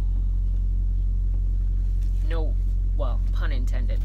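Steady low engine rumble with a constant hum, heard from inside a parked semi-truck's cab, as of its diesel idling. A few soft spoken sounds come in the second half.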